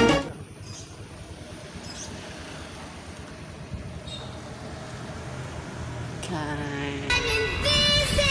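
An even rush of wind and engine noise from riding a motorcycle, after a brief burst right at the start. Music comes in about six seconds in and is loud by the end.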